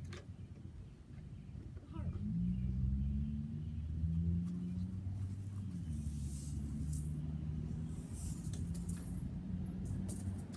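A low, steady engine hum sets in about two seconds in and runs on, its pitch shifting slightly now and then. A few short scraping or brushing noises come in the second half.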